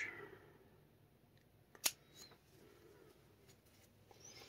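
Scissors snipping through 2 mm EVA foam: one sharp snip about two seconds in, followed by a few faint clicks.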